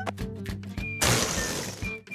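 Cartoon sound effect of a red rubber ball bursting: a sudden rush of escaping air about a second in, fading away over just under a second, as the ball goes flat. Background music plays throughout.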